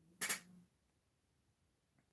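Near silence, broken once a fraction of a second in by a single brief, soft noise.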